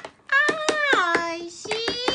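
A young child's voice singing drawn-out words, sliding down in pitch about halfway through, then a new held note near the end, over quick sharp taps several a second.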